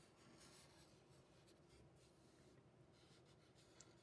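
Near silence, with the faint scratch of a black felt-tip marker drawing short strokes on paper, heard as a few soft hissing passes.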